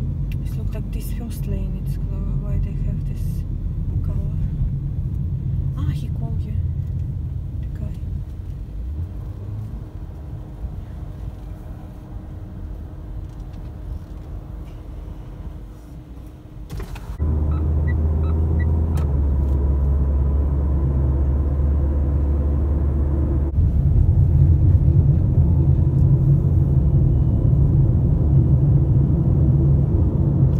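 Low rumble of a car driving, heard from inside the cabin. It quietens for a few seconds, then a steady low hum comes in suddenly, and the rumble grows louder again for the last several seconds.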